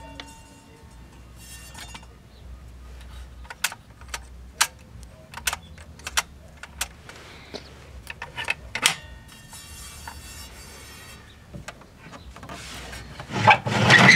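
Handling noises on the record changer of an old television-radio-phonograph console: light rubbing and a scattering of sharp clicks. Near the end comes a louder sliding rumble as the changer's pull-out drawer is pushed shut.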